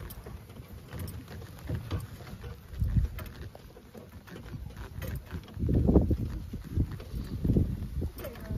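A horse-drawn carriage moving across grass: the horse's muffled hoofbeats with low rumble and thumps from the cart, loudest about six seconds in.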